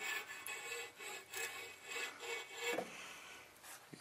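Faint irregular rubbing and scraping with a few soft knocks, over a faint steady hum: handling noise as the camera is moved about under the truck.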